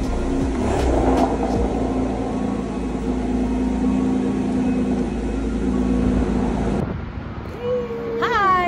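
Porsche 911's flat-six engine running at low revs as the car creeps forward, a steady hum that cuts off about seven seconds in.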